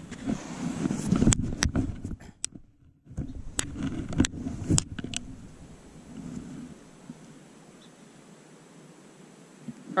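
Brown trout thrashing in the hand, with a run of sharp slaps and knocks over low rumble from wind and handling on the camera microphone. The sound turns to a quieter steady outdoor background in the second half.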